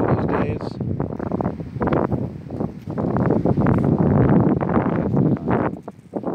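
Wind buffeting the phone's microphone: a loud, gusty noise that swells in the second half and drops away just before the end.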